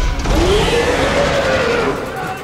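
A long scream rising and then falling in pitch, laid over a loud din with a heavy low rumble.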